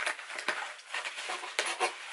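A small cardboard box being opened and its contents handled by hand: irregular rustling with many small clicks and crackles.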